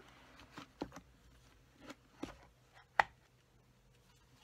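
A clear plastic box with snap latches being set down and opened: a few soft plastic taps and clicks, with one sharp click about three seconds in as the lid comes free.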